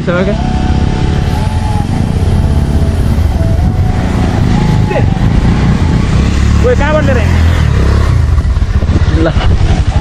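A motorcycle engine running steadily, its pitch drifting up and down, over a heavy low rumble; brief voices break in about seven and nine seconds in.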